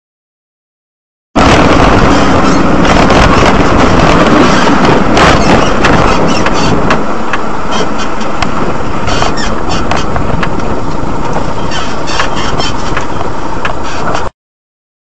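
Dashcam recording from inside a moving vehicle: loud, steady road and engine noise with many scattered knocks and clicks, starting abruptly about a second in.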